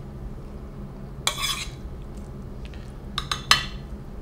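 A small metal spoon scraping and clinking against a stainless steel frying pan and a ceramic plate as sautéed mushrooms are spooned out: one scrape about a second in, then a quick run of sharp clinks near the end.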